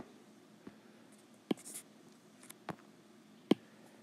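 Apple Pencil tip tapping on an iPad Pro's glass screen while colours are picked and areas filled: about five short, light taps at uneven intervals, the sharpest near the end.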